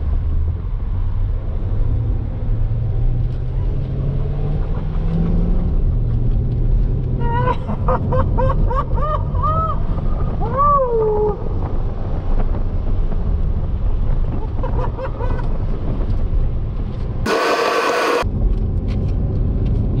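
Chevrolet C8 Corvette's 6.2-litre LT2 V8 at full throttle on a quarter-mile pass, heard from inside the cabin: a low rumble with the engine note climbing and then dropping at an upshift. Midway comes a string of short rising-and-falling high tones, and near the end a second-long burst of hiss.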